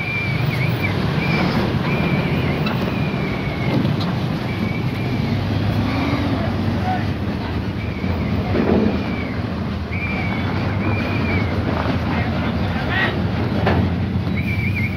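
Diesel engine of a Sinotruk HOWO crane truck running steadily as it pulls a lowbed trailer past, a dense low rumble. Short high chirps recur every second or two above it.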